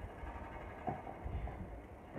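Quiet room tone: a low steady rumble with a couple of faint short knocks about a second in.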